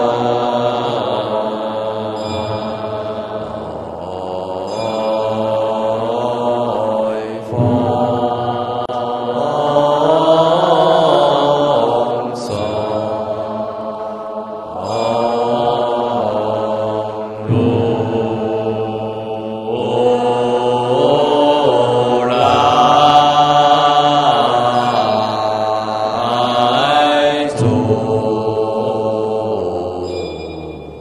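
Chinese Buddhist liturgical chanting by a monastic assembly with a lead cantor on microphone, singing a verse of the morning service in slow, drawn-out melodic phrases. Each phrase holds long notes that glide between pitches, with a short break every few seconds.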